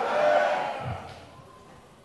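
A congregation calling out together in response, a brief crowd shout that fades away within about a second and a half.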